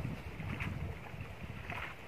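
Wind buffeting the microphone: a low, uneven rumble, with a couple of faint brief sounds above it.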